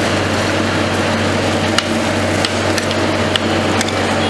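Metal spatulas scraping and tapping on a chilled stainless-steel roll ice cream pan as a freezing fruit-and-milk mix is spread into a sheet, with a few sharp clicks from the blade edges. Under it runs a steady machine hum from the freezing unit.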